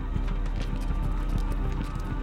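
Background film-score music: sustained low tones under a fast run of light percussive taps.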